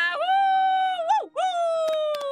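A woman's voice giving a playful wolf howl for a cartoon werewolf girl, in two long held notes: the first ends in a quick dip and rise, the second glides slowly down.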